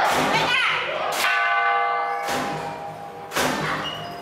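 A metal bell struck once just over a second in, ringing with several clear tones that fade away over about a second.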